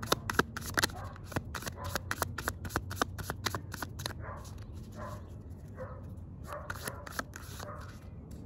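A tarot deck being shuffled by hand, cards slid from one hand into the other: a quick run of crisp card clicks that thins out about halfway through.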